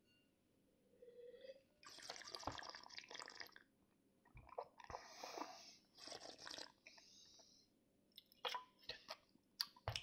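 Faint wet slurping and swishing of wine in the mouth as it is tasted, in several short spells, followed by a few small clicks near the end.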